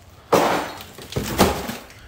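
Bubble-wrapped plastic trim moldings dropped down with a clattering crash, in two noisy bursts, the second with a sharp knock about one and a half seconds in.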